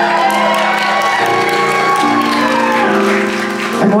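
Grand piano accompaniment playing held chords that change about once a second. Over it run light audience applause and one long voice gliding up and back down.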